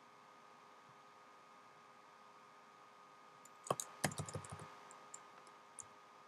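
Faint computer keyboard keystrokes: a quick cluster of clicks about four seconds in and a few scattered ones after, over a quiet steady electrical hum.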